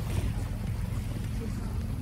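Steady low rumble of a boat under way on the lake, with wind buffeting the microphone.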